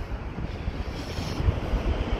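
Outdoor background noise: a low, uneven rumble under a steady hiss, with no distinct events.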